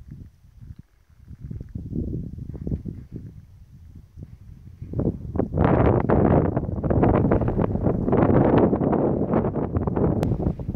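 Wind buffeting the microphone in irregular gusts. It grows much louder about halfway through.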